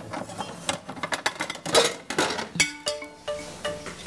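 Dishes and kitchen utensils clinking and knocking several times while they are handled, with a few held musical notes in the second half.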